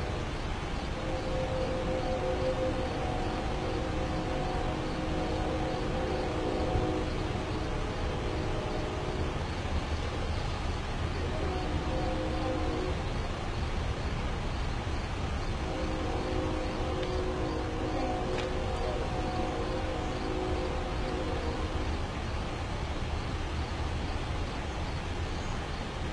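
A distant horn sounding a chord of several steady notes in three blasts: a long one, a short one, then another long one, over a steady low outdoor rumble.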